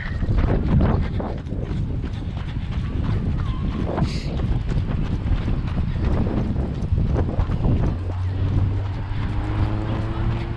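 Wind noise on a moving camera's microphone with footsteps on dirt and gravel. About eight seconds in, the steady hum of a nearby car engine comes in.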